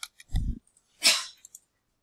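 A few computer keyboard key clicks, then a low, dull thump and, about a second in, a short, sharp burst that is the loudest sound; after it all goes quiet.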